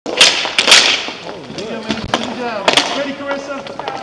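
Sharp clacks of roller hockey sticks striking the puck and each other in a scramble on a wooden rink floor, the loudest hits in the first second and another a little past halfway, with players' voices shouting.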